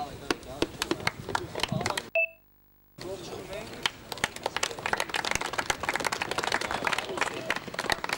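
Scattered handclaps and clapping mixed with voices. The sound cuts out for about a second around two seconds in, with a short beep at the dropout.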